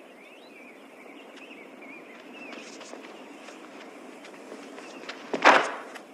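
A low steady outdoor ambience with faint chirping, probably birds. About five seconds in comes a sudden loud rushing swish lasting about half a second: the whoosh of a martial-arts kick cutting the air.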